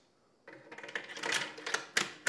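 Ruger Precision Rifle's bolt being worked in the receiver, freshly greased on its locking lugs: a run of metallic clicks and sliding scrapes starting about half a second in, with a sharp click near the end, as the bolt is checked for smooth operation.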